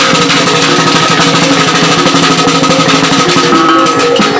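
Maguindanaon kulintang gong ensemble playing: ringing gong tones carry a melody over a fast, dense beat of drum and gong strokes.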